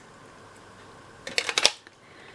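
A metal watercolour tin being handled, with a quick cluster of sharp metallic clicks about a second and a half in as its metal insert of two strips is set into the tin.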